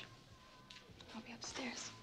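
A woman speaking softly, close to a whisper, with breathy, hissing consonants.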